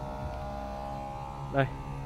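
A small motor running steadily, a constant hum of several fixed pitches.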